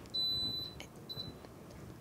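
Craft Express heat press sounding a high electronic beep of about half a second, then a brief second beep at the same pitch about a second in.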